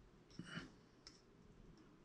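Near silence with a few faint clicks, a short cluster about half a second in and one more a second in, as a sculpting tool and fingers work modelling clay.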